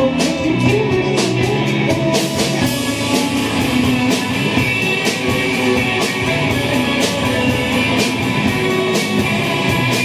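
Live psychedelic rock band playing: electric guitars over a drum kit keeping a steady beat of about two hits a second.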